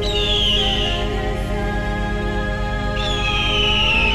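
Ambient music over a steady low drone, with a bird of prey screeching twice: two descending high cries about a second long, one at the start and one about three seconds in.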